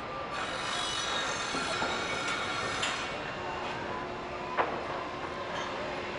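Steady rail-type mechanical noise with thin high metallic squeals running through it, like a train's wheels. A single sharp click comes about four and a half seconds in.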